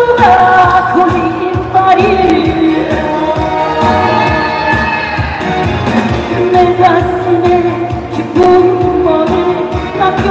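A woman sings a Korean trot song live through a PA, with long held notes over an amplified accompaniment with a steady beat.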